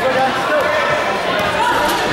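A basketball being dribbled on an indoor gym court, with players' and spectators' voices mixed over the bounces.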